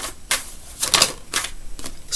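A deck of tarot cards being shuffled by hand: a run of crisp, irregular card snaps, a few a second.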